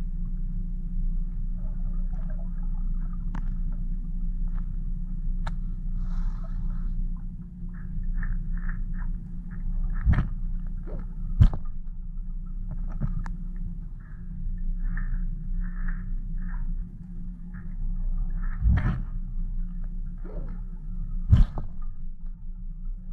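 Underwater sound picked up through a camera housing: a steady low rumble with scattered faint clicks and several sharp knocks. The knocks come about ten seconds in, again a second and a half later, and twice near the end, as a largemouth bass bumps into the camera while attacking a jig.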